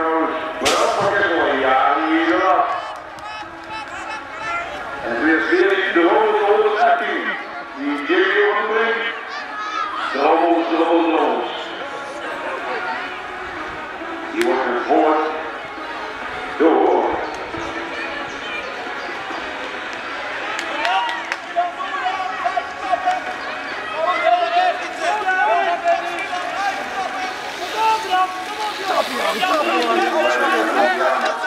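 Voices calling out and talking throughout, with crowd noise behind them.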